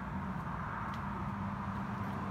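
Steady low background hum with no distinct event, and one faint click about a second in.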